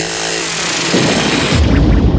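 Electronic intro sound effect: a loud hissing noise burst with a falling whine starts suddenly and cuts off about one and a half seconds in, giving way to a deep bass rumble.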